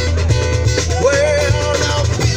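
Amplified live music from a pair of street performers: guitar over a deep, steady bass line, with a melody that bends in pitch about a second in.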